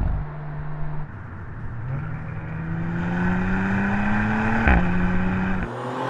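Audi RS 4 Avant's twin-turbo V6 running at a steady note for about a second, then accelerating hard with its pitch rising steadily, and dropping sharply at an upshift near the end.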